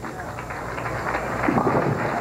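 Bowling ball rolling down a wooden lane on a spare shot, a steady rumble that grows louder as it nears the pins.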